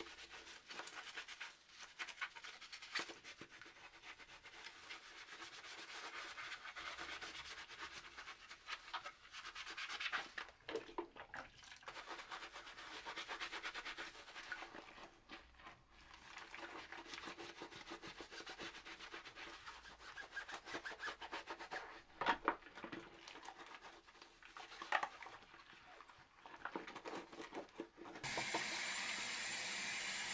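A sponge scrubbing plastic multimeter case parts in a sink of soapy water: irregular rubbing and swishing, with a few sharper knocks. About two seconds before the end a tap is turned on and runs steadily.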